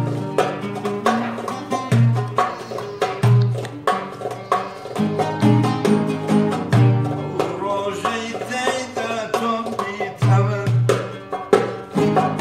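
Acoustic Kurdish song played on classical guitar and oud, strummed and plucked, over deep hand-drum beats, with a man's voice singing along.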